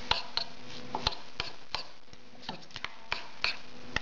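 Metal spoon stirring a thick yogurt and spice mixture in a glass bowl, clinking against the glass about a dozen times at an uneven pace.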